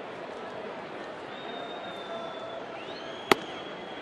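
Ballpark crowd murmur, and about three seconds in a single sharp pop of a 93 mph pitch smacking into the catcher's mitt for strike two.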